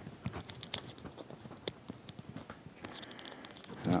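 Small plastic clicks and rubbing as a molded plastic bullwhip accessory is fitted onto the peg at the hip of a Hasbro Indiana Jones action figure.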